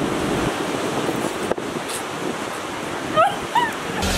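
Steady rush of sea surf and wind, with two short, high-pitched squeals from a person's voice near the end.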